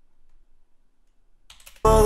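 Near silence with a few faint clicks, then, near the end, a man's sudden loud vocal exclamation that slides up in pitch as he breaks into a laugh.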